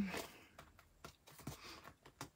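Faint rustling and a few light clicks of a paper card being slid back into a clear plastic planner pocket page.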